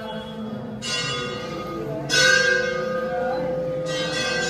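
Metal temple bell struck three times, about one and a half seconds apart, each stroke ringing on; the middle strike is the loudest.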